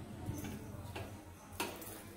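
Faint clicks and light scraping of a spoon and metal plate against the rim of an aluminium pressure cooker as grated coconut is pushed off the plate into the pot, with one sharper click near the end.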